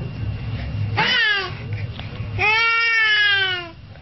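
Baby squealing at its reflection: a short high squeal about a second in, then a longer, loud squeal that slowly falls in pitch, over a low steady hum.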